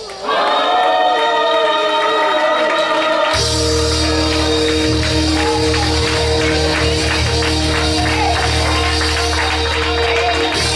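Gospel choir singing with a church band. About three seconds in, a bass line and a held chord come in, and a tambourine keeps a steady beat over them.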